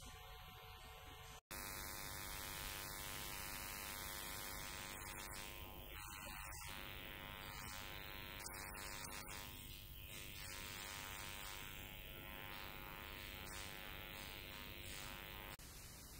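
Faint, steady electrical mains hum with hiss: a buzz with many evenly spaced overtones. It drops out completely for an instant about a second and a half in, and eases off just before the end.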